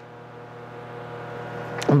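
A steady low hum that slowly grows louder, running straight into a man's speech near the end.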